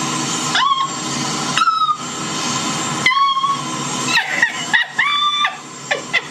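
Steady jet-engine hiss on an airport apron, dropping out a few times. Several short, high squeals rise in pitch over it.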